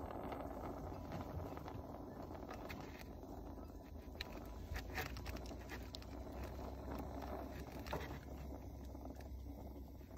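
A small handheld torch that isn't working right, held to the cylinder of a greenhouse vent opener: a faint low steady rumble with a few scattered light clicks.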